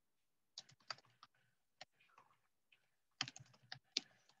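Faint typing on a computer keyboard: irregular groups of keystrokes with short pauses between them.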